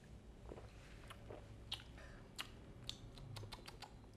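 Faint mouth sounds of people drinking a shot of arak: a swallow and a string of small clicks and lip smacks as they taste it, over a low room hum.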